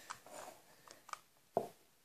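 A few soft clicks and knocks as wooden popsicle sticks and a hot glue gun are handled on a wooden tabletop. The loudest is a short knock about one and a half seconds in.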